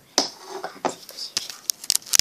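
Rubber loom bands and a hook working on a plastic loom: a handful of short, sharp clicks and snaps as bands are stretched over the pegs.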